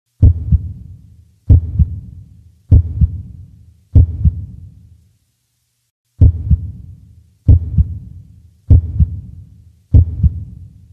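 Heartbeat sound effect: deep double thumps (lub-dub) about every 1.2 seconds, four in a row, a pause about five seconds in, then the beats start again.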